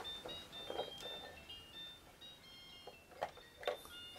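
A baby's electronic toy playing a faint, tinny tune of short high beeping notes, with a few soft knocks as it is handled.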